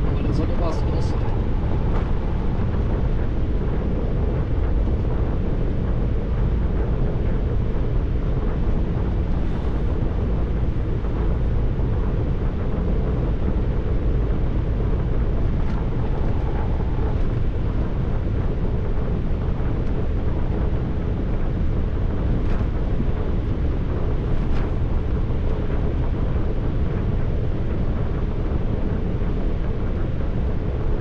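Steady low rumble of road and engine noise inside a lorry cab cruising on the motorway.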